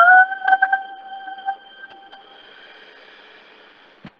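A young woman singing one long held note that rises slightly at the start, then fades out after about two seconds.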